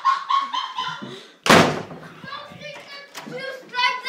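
A door banging once, loudly, about one and a half seconds in, with indistinct voices around it.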